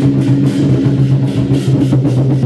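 Chinese war-drum ensemble beating large red cowhide-headed barrel drums (tanggu) with wooden sticks in a fast, driving, continuous rhythm, with hand cymbals ringing over the deep boom of the drums.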